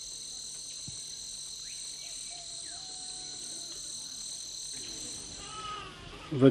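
Steady, high-pitched chorus of tropical insects, several constant tones layered together, which cuts off about five seconds in. A faint knock sounds about a second in.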